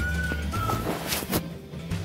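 Background music with a steady low bass, no speech, and two brief noises about a second in.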